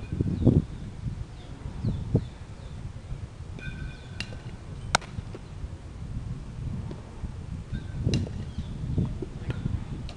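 Wind buffeting the microphone in low gusts, loudest about half a second, two and eight seconds in, with one sharp snap about five seconds in and faint high chirps.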